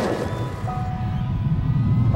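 Cartoon sound effect of a robot dog charging in: a low mechanical rumble that builds slightly, with a few held music notes above it.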